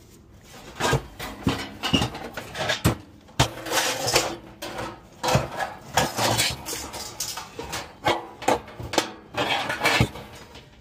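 Irregular metallic clanks, knocks and scraping, beginning about a second in, as a replacement blower motor is handled and fitted inside a sheet-metal furnace blower housing.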